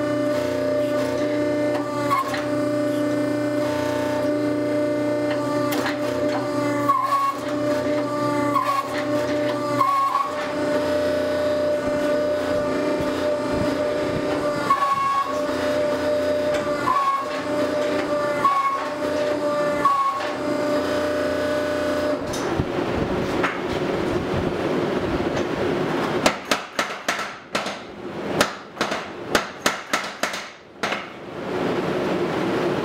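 Background music for roughly the first twenty seconds. Then a belt-driven mechanical power hammer starts up and, about four seconds before the end, strikes hot steel in a fast, uneven run of heavy blows.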